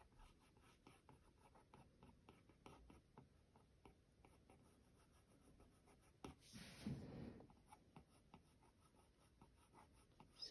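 Faint, quick ticks of a stylus tip tapping and dragging across an iPad's glass screen as short shading strokes are laid down one after another. A brief louder rustle comes about six and a half seconds in.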